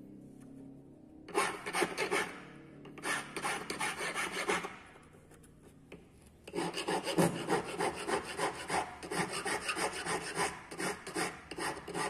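Steel hand file rasping across a 16k gold ring in quick back-and-forth strokes. Two short spells of filing in the first half, then a longer unbroken run from about halfway through.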